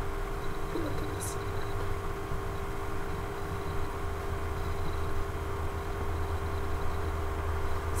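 Steady low hum with a constant faint tone over background room noise, and one brief faint click about a second in.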